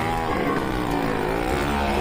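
A motorcycle engine running hard as the bike circles the wooden wall of a well of death; its steady note wavers up and down in pitch.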